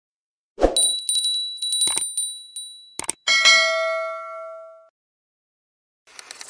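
Intro sound effects: a thump, a quick run of small clicks under a thin high ringing tone, then a single bell-like metallic ding that rings and fades over about a second and a half.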